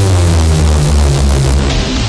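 Electronic dance music transition effect: a deep bass note held under a loud hiss of noise, with falling tones sweeping down. The highest part of the hiss drops away near the end.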